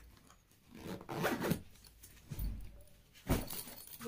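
Zipper of a stuffed fabric backpack being pulled shut in several short strokes, with a sharp thump a little past three seconds in.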